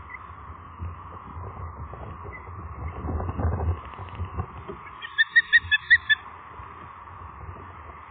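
Osprey giving a quick run of about six short, high whistled chirps, lasting about a second, a little past the middle. A low rumble lies underneath, louder around three seconds in.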